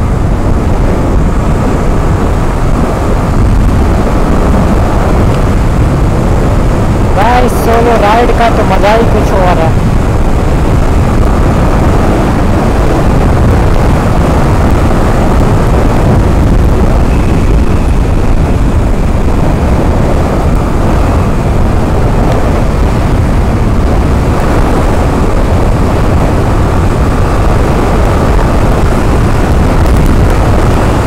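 Steady wind rush on the microphone over a sport motorcycle's engine running at highway speed, about 70 to 90 km/h. About seven seconds in, a warbling horn sounds for about two seconds.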